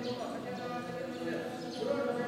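Several voices overlapping in a steady murmur of unclear talk or chant, with no single voice standing out.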